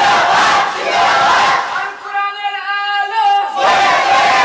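A large crowd shouting together in unison, twice, with a single man's drawn-out call in between, in call-and-response fashion.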